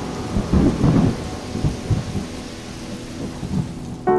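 Steady rain falling, with low thunder rumbling under it in uneven swells, loudest about a second in.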